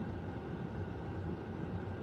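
Steady low rumble and hum of a car's cabin while it sits parked, from its engine or ventilation running.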